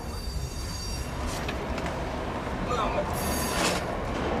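A subway train running through the tunnel: a steady low rumble with thin, high wheel squeals. The squeal swells brighter near the end.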